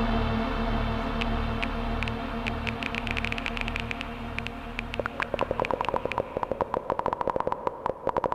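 Novation Summit synthesizer: a dark, low droning pad with a pulsing bass fades away over the first few seconds while short, clicky plucked notes come in. The plucks grow denser into a fast run of short pulsing notes from about five seconds in.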